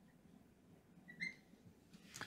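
A dry-erase marker squeaking once on a whiteboard as it writes, a short high squeak about a second in; otherwise near silence.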